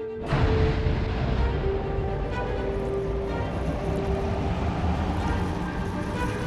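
Background score with long held notes over a low rumbling, rushing underwater sound effect for the submarine moving through the water.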